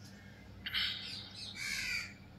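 Two bird calls, the first about two-thirds of a second in and the second about a second later.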